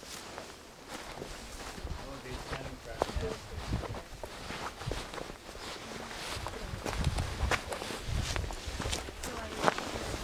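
Footsteps crunching and scuffing on dry, stony dirt in an uneven walking pace, with a sharper scuff about three seconds in and another near the end.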